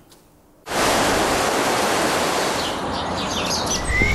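Fast-flowing water rushing steadily around rocks, starting abruptly a little under a second in. Birds chirp over it in the last second or so.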